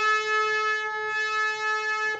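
Harmonium holding one long note, steady in pitch, with the bright, reedy overtones of its free reeds.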